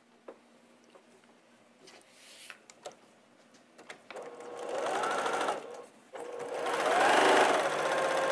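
Electric sewing machine stitching a seam through quilt block fabric in two runs with a short stop between, the first about four seconds in and the second about six seconds in. Each run speeds up and eases off. Before the first run there are only a few faint clicks.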